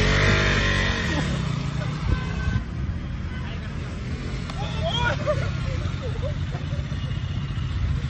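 KTM RC 200's single-cylinder engine revving as the motorcycle pulls away with two aboard, loudest in the first second, then running on at a lower, steadier note as it rides off. Voices are heard about five seconds in.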